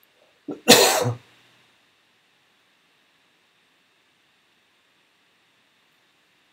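A man coughs once, a single sharp burst about half a second in, preceded by a short catch of breath.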